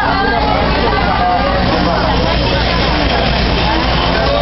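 Busy open-market din: many overlapping voices, a steady engine rumble of traffic, and music mixed in.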